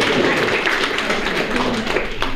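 A group of people clapping: many quick, overlapping hand claps.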